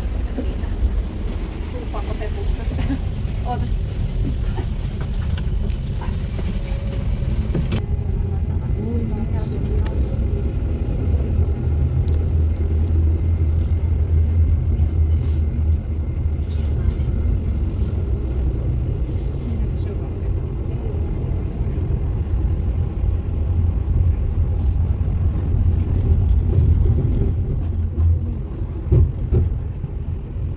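Tram running, heard from inside the car: a steady low rumble from the motors and the wheels on the rails.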